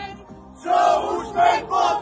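A group of men chanting loudly in unison, a football supporters' chant in rhythmic shouted syllables, starting up again about half a second in after a brief lull.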